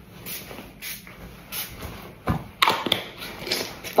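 Pump-spray perfume bottle spritzed several times, each a short hiss. A couple of knocks follow past the middle.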